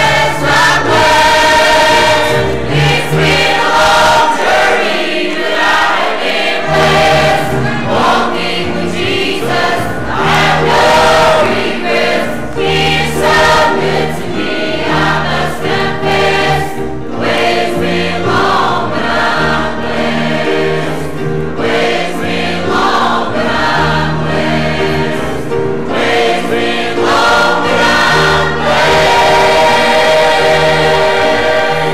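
Church choir singing a gospel song with instrumental accompaniment, with bass notes changing every second or two beneath the voices.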